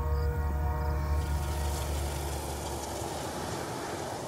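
Freight train rumbling past, with a long steady horn blast that fades out about halfway through.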